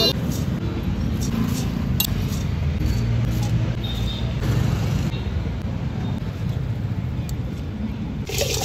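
Steady street traffic rumble with voices in the background, and a few sharp clicks of a steel spoon against the steel mixing bowl as bhel is put together.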